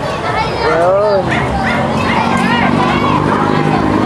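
Many children's voices talking and calling out at once. A steady low hum joins about halfway through.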